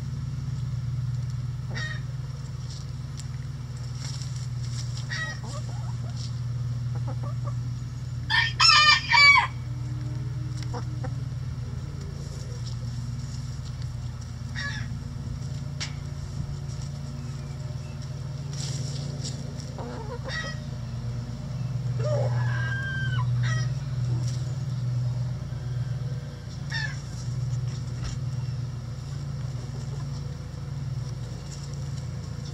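Backyard chickens calling and clucking in short scattered calls, with a rooster crowing loudly once about eight seconds in and another longer, wavering call around twenty-two seconds. A steady low hum runs underneath.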